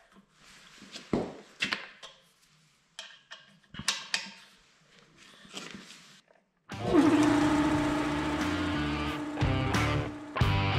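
Scattered small clicks and taps of hands threading a plug into a fitting on an air compressor's pressure switch. About seven seconds in, loud rock music with electric guitar starts suddenly and takes over.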